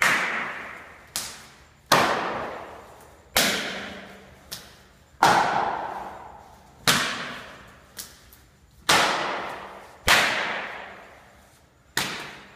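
Body-conditioning strikes landing on a student's torso and arms in Chow Gar southern mantis training: sharp slaps about every one and a half seconds, with a few lighter hits between, each ringing out in the echo of a hard-walled hall.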